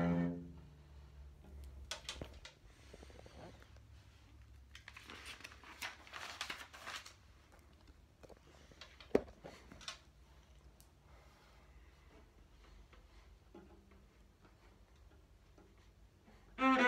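A cello note dies away at the very start. Then come faint rustling and scraping from the recording phone being handled and moved, with one sharp tap about nine seconds in. It settles to quiet room tone for the last few seconds.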